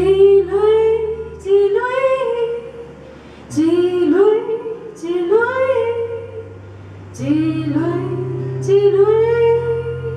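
A woman singing a slow melody live in three phrases, with short pauses between them, over held acoustic guitar notes.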